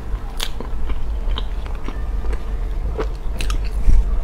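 Close-miked chewing of thick, sticky chocolate lava cake: scattered sharp mouth clicks, with a louder one just before the end, over a steady low hum.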